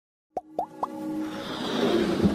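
Animated logo intro sting: three quick rising pops about a quarter-second apart, then a swelling whoosh over a held note that builds in loudness.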